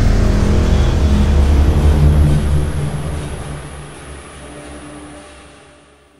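Cinematic logo-intro sound effect: the deep rumbling tail of a big impact, slowly fading out over about four seconds, with a thin high ringing tone above it.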